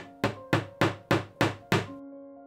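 A small claw hammer driving a nail into a wall with a steady run of about seven light strikes, roughly three a second.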